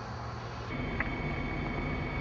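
A 1997 Chevy 1500 pickup's 350 small-block V8 idling steadily, heard from inside the cab, with a faint thin steady whine over it and one light click about a second in.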